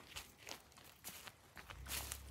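Footsteps on dry grass and twigs: a few soft, irregular crunching steps, with a low rumble coming in near the end.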